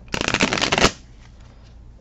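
A brand-new 55-card Inner Star Oracle deck of stiff, thick card stock being riffle-shuffled: a rapid run of card flicks lasting under a second that stops abruptly. The cards are stiff and not yet broken in.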